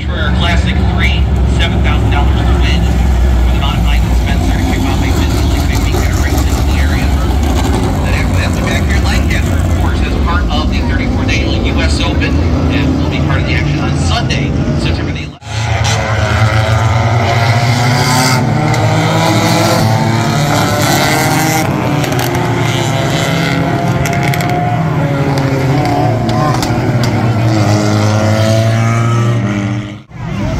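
Race car engines on a short oval. First a deep, heavy rumble from a field of modifieds circling at pace speed behind the pace truck. After a cut about halfway, a pack of smaller stock-bodied race cars goes by, their engine notes rising and falling as they accelerate and lift.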